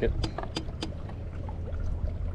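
A few light clicks from handling the fishing rod and reel, about three in the first second, over a steady low hum.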